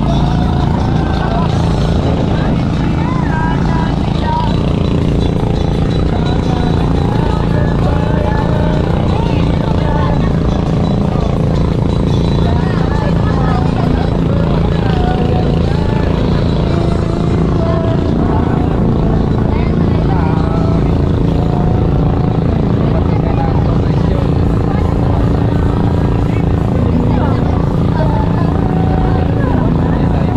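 Boat engine running steadily at a constant pitch, with people's voices chattering over it.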